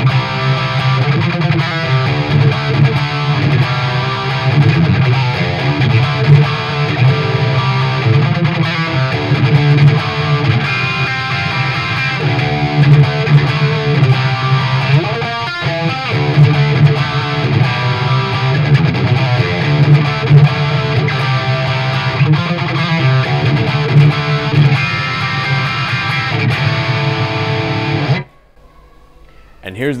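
Gibson Les Paul electric guitar in drop-D tuning playing a riff with two different tail phrases, one after the other. The playing runs on without a break and stops abruptly about two seconds before the end.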